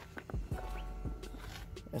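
A few soft, irregular footsteps on dirt ground with knocks from a hand-held camera being carried.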